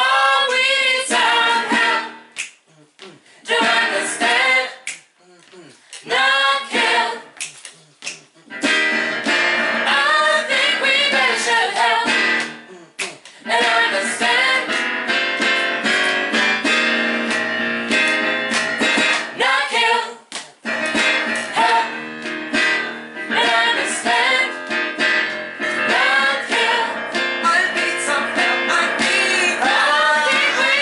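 A small group of women singing a gospel-pop song in harmony over a keyboard, with a few short breaks in the first nine seconds before they sing on steadily.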